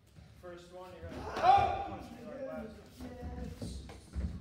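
Voices in a large hall, with one loud shout (a kihap) about a second and a half in and a few thuds of strikes or feet on the mats.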